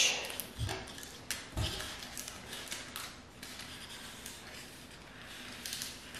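Adhesive laminate sheet being handled while its plastic backing is peeled loose at one edge: light crackling and small clicks of the film, with a couple of soft taps on the table in the first two seconds.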